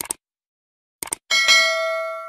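Subscribe-animation sound effect: a quick double click at the start, another double click about a second in, then a bell chime with several pitches ringing at once that fades slowly.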